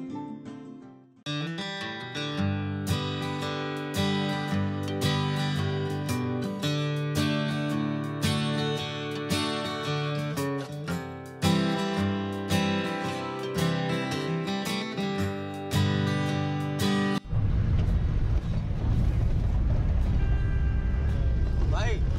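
Background music led by strummed acoustic guitar. About seventeen seconds in, it cuts off abruptly to the steady low rumble of a Tata Sumo driving on a gravel road, heard from inside the cabin.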